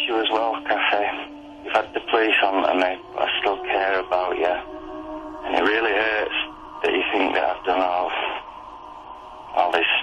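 Speech heard through a telephone-quality recording, narrow and cut off at the top, with a steady electrical hum beneath it: a played-back phone or voicemail message.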